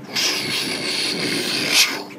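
A man's mouth-made hissing whoosh, a pretend jet sound effect for a dashboard button that makes wings come out; it holds steady, swells near the end, then cuts off suddenly.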